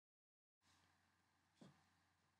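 Near silence: faint background hiss after a moment of dead silence at the start.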